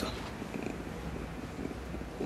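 A low, steady background rumble of room tone, with no speech.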